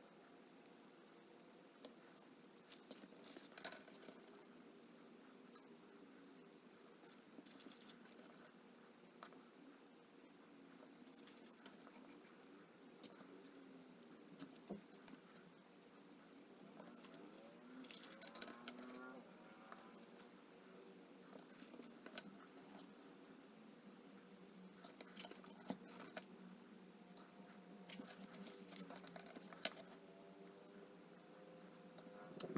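Faint, scattered clicks and taps of wooden colored pencils being picked up, knocked together and laid into a glue-up form, with light scraping of a stick spreading epoxy on them. The taps come in small clusters over a low steady room hum.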